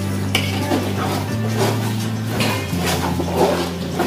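A spoon stirring a thick tomato masala in a large metal pot, with repeated scrapes and clinks against the pot's side, over background music.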